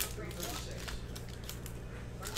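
Trading cards and a pack wrapper being handled by hand: a soft click at the start, then faint rustling over a low steady hum.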